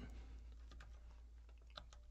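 Near silence with a few faint keystrokes on a computer keyboard, the clearest one near the end.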